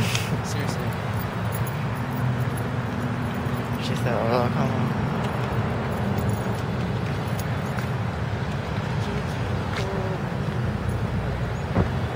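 Outdoor traffic hum and wind with handling noise from a phone carried against a jacket while walking. A brief wavering sound comes about four seconds in.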